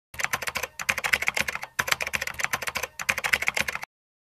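Keyboard typing sound effect: fast key clicks in four quick runs with short pauses between them, stopping just before the end.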